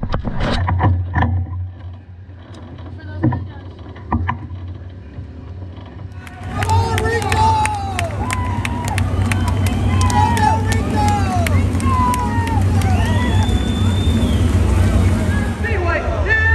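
Field of 410 sprint car engines running on the track, a steady low rumble that gets much louder about six seconds in, with pitch rising and falling over it.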